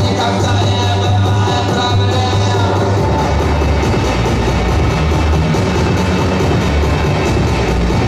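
Electronic body music played live through a PA: a heavy bass line under a steady, even beat, loud throughout.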